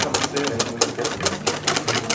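Wire whisk beating fast by hand against a stainless steel mixing bowl: a quick, steady clatter of about eight strokes a second.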